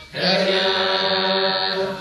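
Maasai women's voices chanting one long, steady held note together, part of the chant that goes with their jumping dance.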